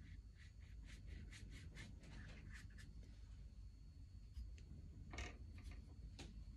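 Faint paintbrush strokes on watercolour paper, a few quick swishes a second at first, with a louder single stroke or rustle about five seconds in.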